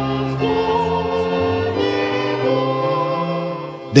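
A choir singing a hymn in slow, held notes, the sound dipping just before the end.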